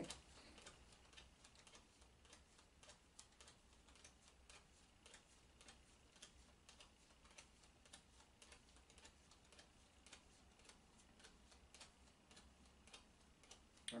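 Faint, soft clicks of oracle cards being dealt one at a time onto a cloth-covered table, about two a second, as the deck is counted through card by card.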